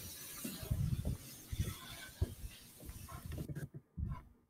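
Footsteps on stone paving with rubbing and handling noise from a hand-held camera carried at walking pace, heard as irregular low thumps over a steady hiss. The sound cuts out briefly near the end.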